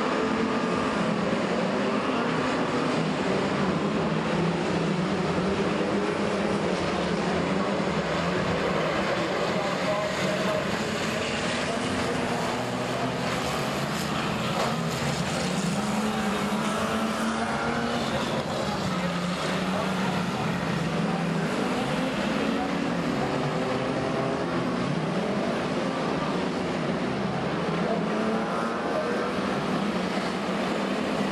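A pack of speedway stock cars racing around a dirt oval, their engines revving up and down as they lap.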